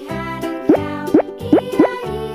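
Children's background music, with four quick rising 'bloop' cartoon sound effects in a row about halfway through, louder than the music.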